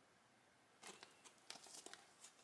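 Plastic pocket page protectors in a scrapbook album crinkling as they are handled and turned: a short faint rustle just under a second in, then a quick cluster of crackles near the end.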